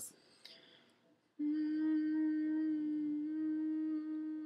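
A man humming one long, steady 'mmm' note that starts about a second and a half in and dips slightly in pitch partway through.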